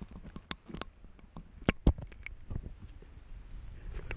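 Scattered sharp clicks and crunches, the loudest a pair just under two seconds in, over wind rumbling on the microphone; a faint steady high hiss sets in about halfway.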